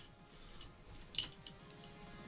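Faint clicks and taps of an ESP32 module being fitted onto the pin headers of a QuinLED-Dig-Quad LED controller board. The sharpest click comes about a second in.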